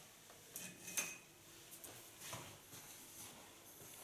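Faint clinks and clicks of small hairdressing tools being handled, a few light knocks scattered through, the clearest about a second in.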